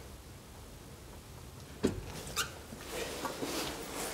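Elevator door being opened: a sharp latch click about two seconds in, then another click and a few lighter knocks and rattles as the door swings.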